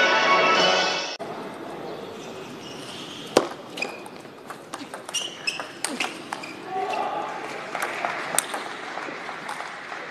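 Music cuts off about a second in. Then comes the ambience of a large hall, with the sharp clicks of a table tennis ball striking bats and the table during a rally.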